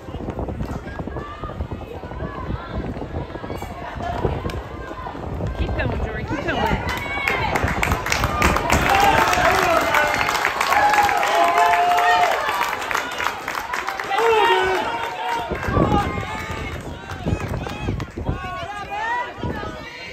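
A crowd of spectators cheering and shouting many voices at once, growing louder about a third of the way in and staying loudest for several seconds in the middle before easing off.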